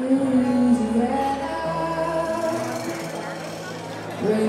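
Zydeco band playing live in a soft passage: a woman singing long held notes over quiet guitar and bass, without drums.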